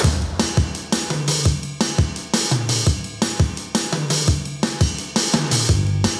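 A rock song with a kick-drum beat about twice a second and bass, played back through a JBL EON712 powered PA speaker turned up to its maximum clean volume, short of clipping or limiting, and picked up by a room microphone.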